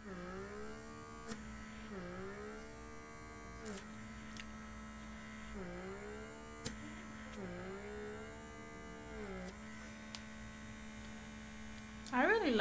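Handheld electric blackhead vacuum's small motor running with a steady hum. Its pitch dips briefly and recovers about every two seconds, as the suction tip is pressed against and drawn along the nose.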